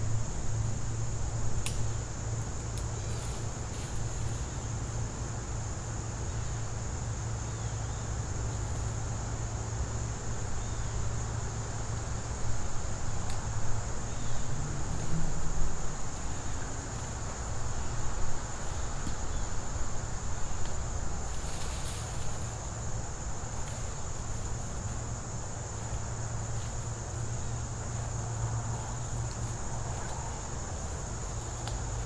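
Steady, high insect chorus over a low, even rumble, with a few faint clicks and rustles.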